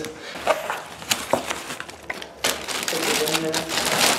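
A plastic bag crinkling and rustling as it is handled, with irregular sharp crackles.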